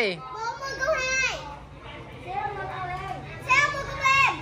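Voices of several people talking in short, high-pitched phrases, children's voices among them, over a low steady hum.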